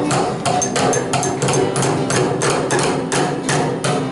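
Several hammers driving nails into a wooden log, quick irregular overlapping blows about five a second, some with a short metallic ring. Acoustic guitar music plays underneath.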